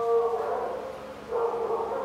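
A drawn-out howl at a fairly steady pitch, fading out about half a second in and starting up again about a second and a half in.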